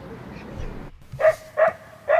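A sound-effect recording of a distant dog barking, two short barks about half a second apart starting a little over a second in. Before the barks, a park ambience recording plays as a steady hiss.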